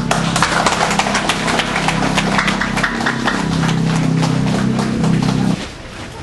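A crowd clapping in quick, dense claps, with music playing a steady held chord underneath that stops about five and a half seconds in.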